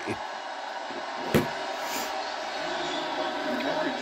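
A college football broadcast playing from a TV: a steady crowd din with a commentator's voice faintly under it, and one sharp knock about a second and a half in.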